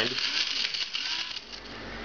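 Electric blade coffee mill (Bosch) grinding whole toasted spices: a rattling whir of hard pieces being chopped against the cup, which stops about one and a half seconds in.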